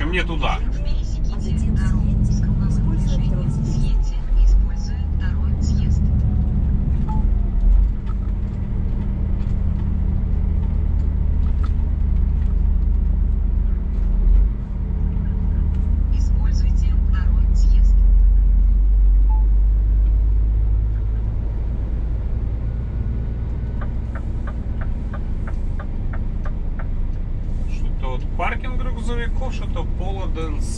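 Scania S500 truck's diesel engine running on the move, heard from inside the cab as a steady low drone. The drone eases off a little about two-thirds of the way through.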